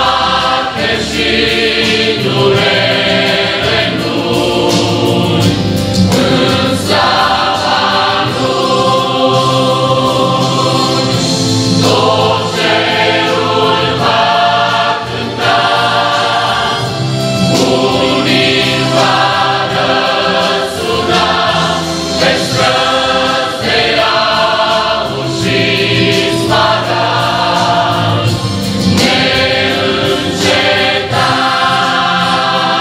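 Large mixed choir of men's and women's voices singing a hymn, with long held chords that change every second or two.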